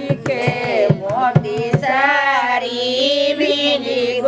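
Women singing a wedding folk song to a dholak hand drum. The drum strokes fall in about the first two seconds, and then the singing goes on alone.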